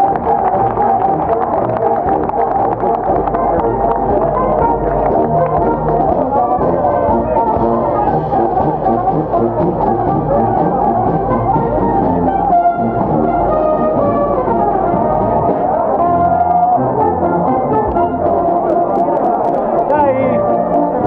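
A brass band playing, with sustained notes that change in steps.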